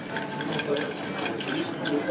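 Bar spoon stirring ice cubes in a glass mixing glass: a quick, continuous run of light clinks and rattles of ice against the glass, with voices in the background.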